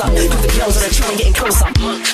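Bassline / UK 4x4 house music from a DJ mix: heavy sub-bass under a steady club beat with a vocal over it. The deep bass drops out near the end.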